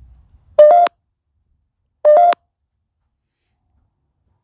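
Two short electronic beeps about a second and a half apart, each a quick two-note rising chirp: a handheld ghost-hunting meter going off.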